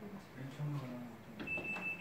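A man's low, hesitant 'um' sounds, then a thin, steady high-pitched beep lasting about a second near the end.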